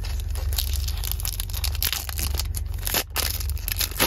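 Foil trading-card booster pack being torn open and crinkled by hand: a run of crackling rips, with a sharp snap at the end as the wrapper comes apart. Underneath is the steady low hum of the truck's engine idling.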